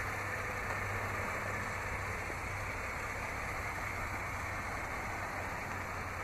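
Ford Flex's 3.5-liter V6 idling: a steady, unchanging hum under an even hiss.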